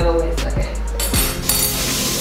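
Background music, and about one and a half seconds in a kitchen tap starts running water in a steady hiss.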